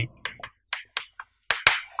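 Chalk clicking and scratching on a chalkboard as words are handwritten: a string of short, sharp clicks, about seven in two seconds, the loudest near the end.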